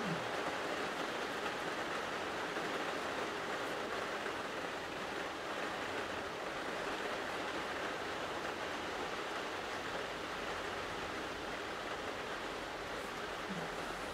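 Steady rain, heard as an even hiss with no breaks.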